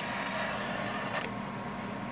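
A toggle switch on the side of a Cobra 25 CB radio clicks once as it is flipped to select an added band of 40 channels below CB channel 1, followed by a steady low hiss.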